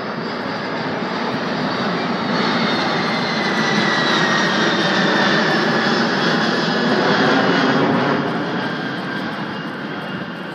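Jet engines of the Boeing 747 Shuttle Carrier Aircraft passing low overhead. The roar builds to its loudest over several seconds, with a thin whine sliding slowly down in pitch, then starts to fade near the end as the plane moves away.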